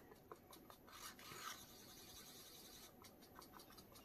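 Near silence, with faint scratching and light ticks of a wooden stir stick working gold leaf in resin in a small cup, breaking the leaf up.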